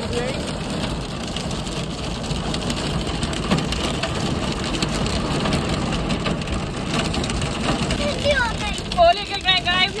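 Heavy rain and hail pelting a car's roof and windshield, heard from inside the car: a dense, steady patter with scattered sharper hits. Voices come in near the end.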